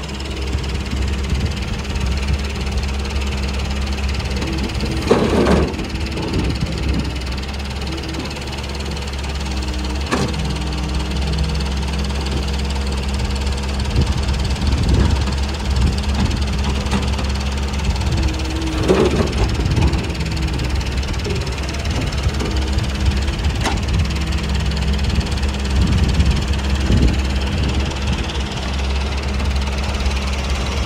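Doosan excavator's diesel engine running steadily under working load. Two louder clattering bursts of about a second each come through, one about five seconds in and another some fourteen seconds later.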